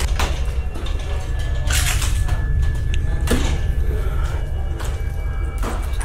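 A steady low rumble with faint held tones under it, broken about four times by loud short rustling scrapes of clothing, hands and feet on an aluminium loft ladder during a hurried climb down.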